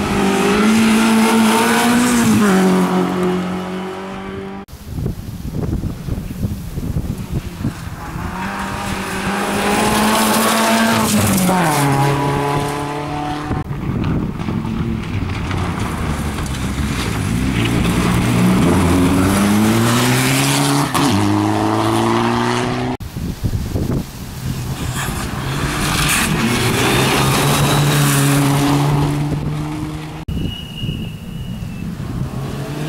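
Rally cars taking a gravel corner one after another, four passes with abrupt changes between them. The blue Renault Clio at the start and the red Mitsubishi Lancer Evolution in the third pass are among them. Each engine revs hard, its pitch dropping and climbing again through lifts and gear changes, over the hiss and rattle of gravel thrown up by the tyres.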